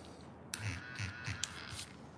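Faint handling noise of drawing materials on a desk: a few light clicks and taps over a soft rustle as a pencil is set down and a marker picked up.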